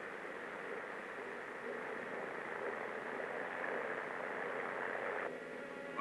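Steady rushing noise on a worn vintage film soundtrack, even and without pitch, with faint sustained music notes coming back in near the end.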